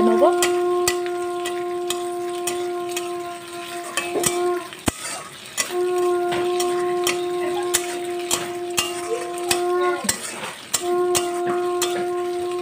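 A metal spatula scraping and ticking against an aluminium wok as sliced onions and ginger paste fry with a light sizzle. Over it a steady horn-like note is held for about four seconds, three times with short breaks, and is the loudest sound.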